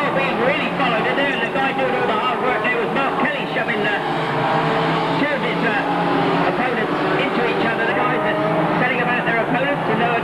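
Engines of several banger racing cars running and revving together as the pack races round the track, with people's voices mixed in.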